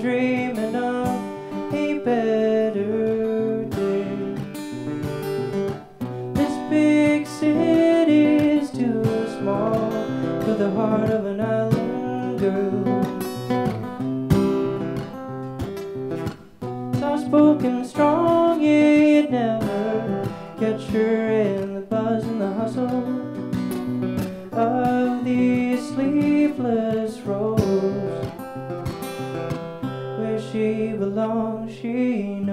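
Man singing a slow folk song, accompanying himself on a strummed acoustic guitar.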